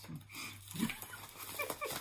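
Soft laughter from a woman, with a few light handling clicks early on.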